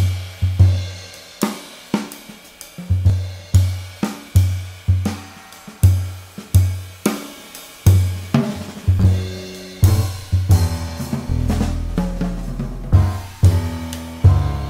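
Jazz drum kit playing an open, loose pattern: low drum hits on the bass drum and toms, about one to two a second and each dying away, under cymbal and hi-hat wash. About ten seconds in the sound fills out with sustained low notes.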